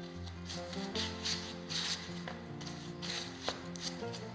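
Gloved hands kneading bread dough, several soft rubbing and pressing swishes, over background music with held notes.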